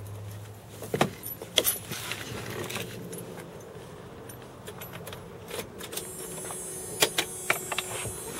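Several sharp metallic clicks and jingles in two clusters, about a second in and again about seven seconds in, over low background noise, with a low hum that fades out during the first second.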